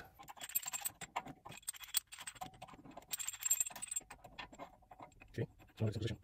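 Irregular light metallic clicks and clinks of a brake caliper piston wind-back tool being fitted by hand, its threaded body and adapter knocking against the caliper.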